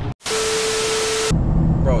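Static-noise transition effect: a brief dropout, then about a second of loud hiss with a steady mid-pitched tone through it, cut off suddenly. It is followed by the low steady drone of a vehicle cabin.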